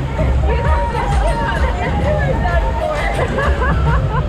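Raft riders on a river-rapids ride laughing and calling out with excited, drawn-out voices over the rush of whitewater and a steady low rumble.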